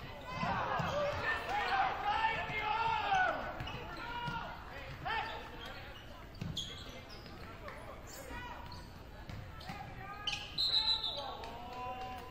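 A basketball being dribbled on a hardwood gym floor during live play, with players' voices calling out over it.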